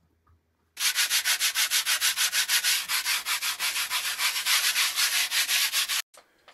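Hand scrubbing of a metal stove part: fast, even rubbing strokes, about six a second, starting just under a second in.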